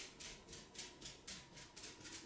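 Small eyeshadow brush working highlight shadow into the inner corner of the eye: faint, quick brushing strokes, about four a second.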